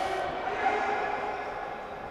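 Quiet indoor sports-hall background during a stoppage in play: a steady low hum with faint, indistinct voices in the hall.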